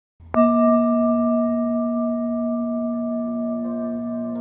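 A single bell-like metal tone struck once and left to ring, fading slowly. Other soft notes join in near the end as music begins.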